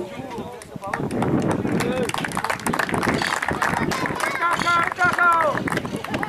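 Several people shouting and calling out at once on a football pitch, with high, drawn-out shouts near the end and sharp claps among them.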